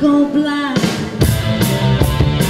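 Live band with a woman singing: the band drops out for a moment under one long held vocal note, then the full band comes back in with a steady drum beat about three-quarters of a second in.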